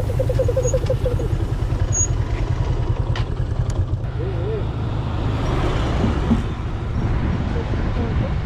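Benelli TRK 502 parallel-twin motorcycle engine running steadily at low speed, heard as a low rumble mixed with wind noise on the helmet-mounted microphone.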